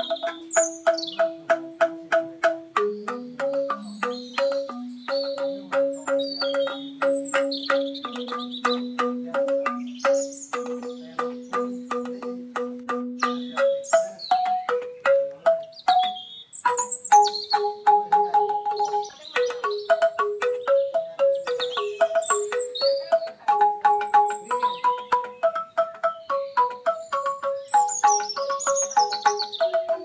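Banyuwangi angklung music: bamboo xylophones struck in fast, even repeated notes, playing a melody over a lower part that drops out about halfway. Bird chirps sound over the music here and there.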